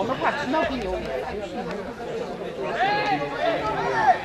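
Several people talking and calling out over one another, with a louder, higher-pitched shout about three seconds in.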